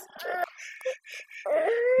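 A small child crying and whimpering in short broken sobs, then a longer held wail near the end.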